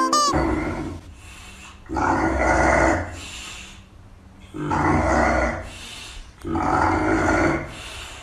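English bulldog making loud, rasping breaths: four long ones about two seconds apart, each with a low rumble.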